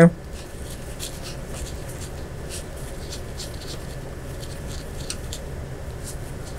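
Faint, irregular scratching and light clicks of a T10 Torx bit driver turning a screw back in by hand, metal on metal.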